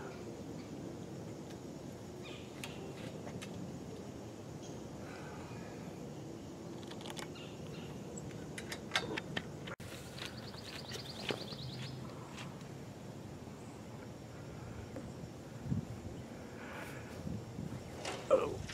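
Faint outdoor background with scattered light clicks and knocks from hands working metal antenna elements on a mast. A brief high, rapid trill comes about ten seconds in.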